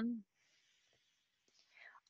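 The end of a spoken phrase, then near silence with a faint hiss, and a soft intake of breath just before speech resumes.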